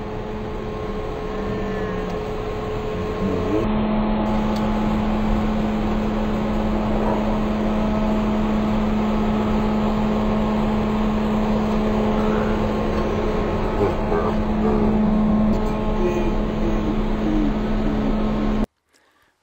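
A steady engine drone with a constant low hum, growing louder about four seconds in and then holding. Short bits of a toddler's babbling come through it now and then.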